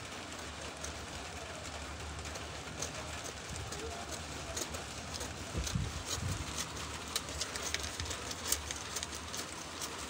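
Scissors snipping through brown pattern paper: a run of short, crisp clicks that come thicker from about halfway through, over a low steady hum.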